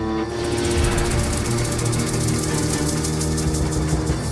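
Dramatic TV-serial background score: held low notes with a fast rattling roll of high percussive strokes over them, starting just after the start and stopping near the end.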